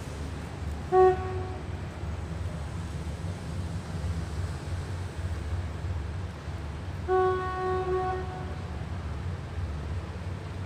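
Departing diesel train with a steady low engine rumble. The horn gives a short blast about a second in and a longer, wavering blast around seven seconds in.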